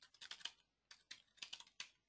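Faint typing on a computer keyboard: a quick run of separate key clicks.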